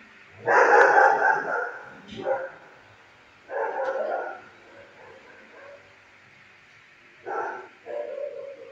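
A dog barking in four bursts: a long loud one about half a second in, a short one just after two seconds, another near four seconds, and a brief one near the end.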